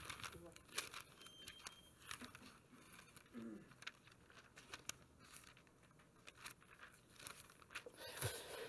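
Faint, scattered rustles and flicks of thin Bible pages being turned by hand.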